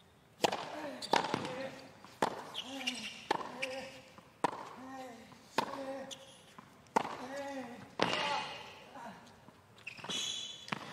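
Tennis rally on a hard court: a serve followed by racket strikes on the ball roughly once a second, eight hits in all. Most hits are followed by a short grunt from the player.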